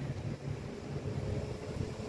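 Wind buffeting a phone's microphone, an uneven low rumble, with a faint steady hum under it.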